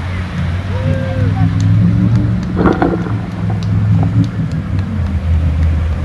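Hummer H1 engine running as the truck drives through a muddy water crossing, a steady low drone whose pitch shifts up and down with the throttle. Water splashes about two and a half seconds in.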